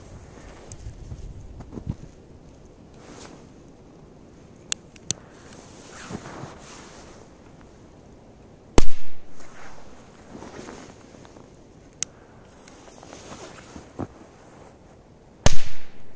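Two Corsair-type firecrackers going off in snow: a loud bang about nine seconds in and a second near the end, each followed by a short echo. There are a few faint clicks between them.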